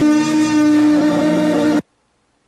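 A loud horn blaring on one steady note, which cuts off suddenly near the end.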